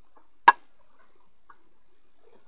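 A single sharp knock about half a second in, with faint scratching and rustling around it.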